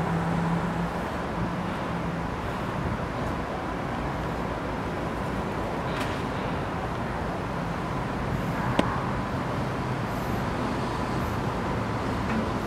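Steady outdoor street ambience: distant traffic noise with a low hum, and a single sharp click about nine seconds in.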